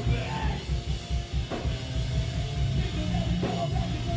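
Pop punk band playing live: distorted electric guitars, bass guitar and a drum kit at full volume.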